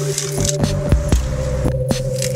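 Electronic background music: held synth notes that step in pitch, over a beat of sharp clicks.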